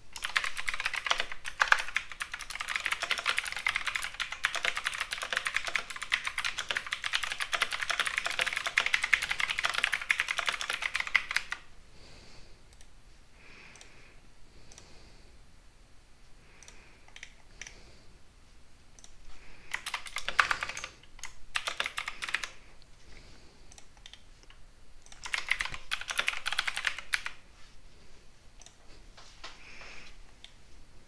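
Typing on a computer keyboard: a fast, steady run of keystrokes for about the first eleven seconds, then scattered single clicks and two more short bursts of typing later on.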